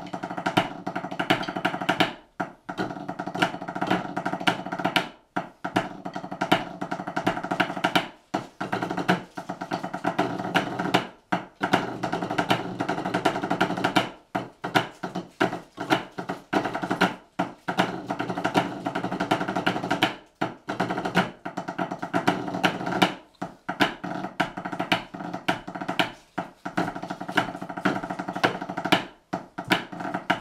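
Drumsticks on rubber practice pads, several pipe band drummers playing a drum score together in rapid strokes, with a brief break in the playing about every three seconds.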